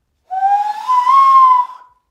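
A woman blowing a cupped-hand whistle as an animal call: one breathy tone that glides slowly upward, levels off and fades out after about a second and a half.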